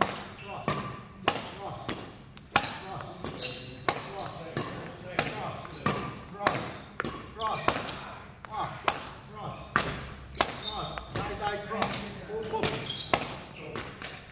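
Badminton rackets striking a shuttlecock in a fast, steady rally, one sharp crack about every two-thirds of a second as the two players trade shots.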